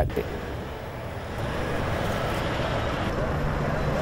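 Steady outdoor vehicle and traffic noise, with a low steady hum joining a little over three seconds in.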